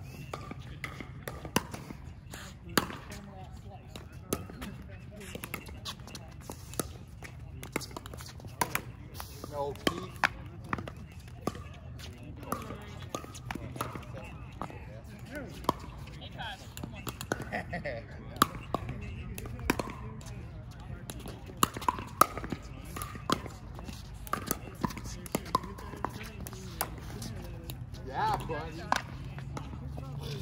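Pickleball paddles hitting a plastic pickleball in rallies: many sharp pops at irregular intervals, some much louder than others.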